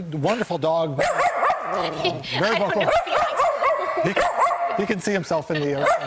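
Small shaggy dog barking repeatedly in a rapid string of short, high barks, set off by seeing its own picture on the studio monitor.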